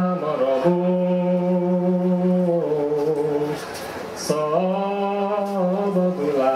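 A man singing a slow folk melody solo and unaccompanied, in long held notes that step from one pitch to the next, with a short break for breath a little past halfway.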